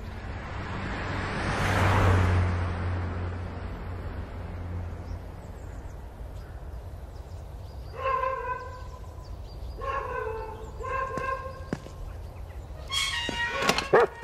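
An SUV drives past, its engine and tyre noise swelling to a peak about two seconds in and fading over the next few seconds. From about eight seconds, a few short held musical notes follow, and a dog's panting starts near the end.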